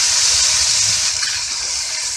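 Ground onion and garlic paste poured into hot oil in a kadhai, setting off a loud hissing sizzle that gradually dies down after about a second.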